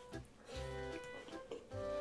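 Soft background music with plucked-string notes over low bass notes.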